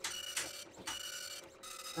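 Dot matrix printer making a few short mechanical bursts and clicks, with a thin pitched buzz in them, as it is handled and tried but does not start properly.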